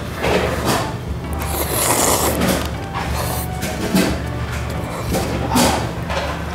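Ramyun noodles slurped in long, noisy pulls and then chewed, over steady background music.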